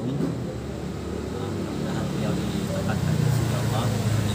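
A man's voice in faint, broken fragments over a steady low rumble that swells louder in the last second.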